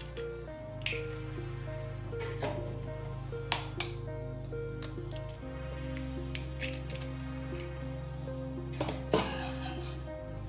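Background music with steady held notes, over which an egg is cracked against the rim of a mixing bowl: two sharp taps a little over a third of the way in. A few more clinks come near the end.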